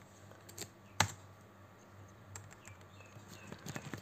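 Computer keyboard keystrokes: a few separate key clicks scattered over the seconds, the loudest about a second in, as mistyped digits in a line of text are deleted.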